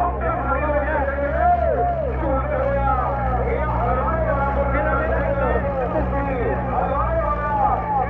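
Continuous talking over a steady low engine hum.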